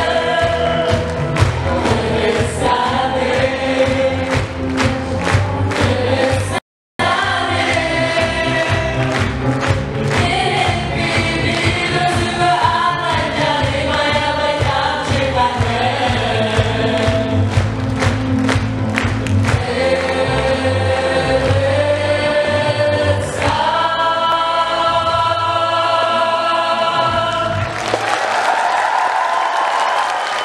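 Amplified group singing over backing music with a steady beat, and a standing crowd clapping along. There is a short break in the sound about seven seconds in, and near the end the song settles onto a long held chord.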